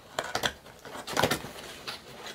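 Cardboard box being pulled open by hand: its flaps scrape and rustle in a few short spurts, the loudest about a second in.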